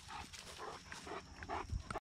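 A Great Dane sniffing and breathing in short, uneven puffs.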